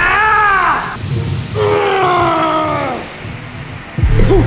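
A man's long, strained yells while pushing through a heavy leg set. The first cry rises and then falls in pitch; a second long cry starts a little over a second later and slides downward.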